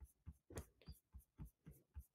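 Near silence with faint, irregular soft taps, about four a second.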